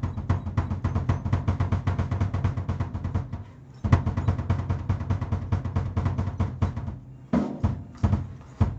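Acoustic drum kit played with fast, even double-kick bass drum strokes under snare and cymbal hits. The pattern stops briefly about three and a half seconds in and again near the end, then starts again.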